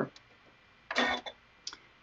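A short vocal utterance about halfway through, otherwise quiet apart from a couple of faint small clicks.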